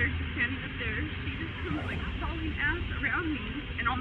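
A woman talking, with a steady low rumble underneath.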